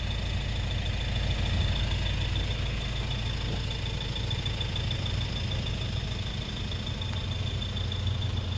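Car engine idling steadily, a low even rumble, with a faint steady high whine above it.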